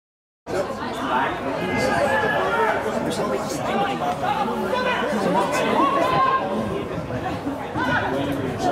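Silence that cuts off about half a second in, then many people talking at once: indistinct spectator chatter.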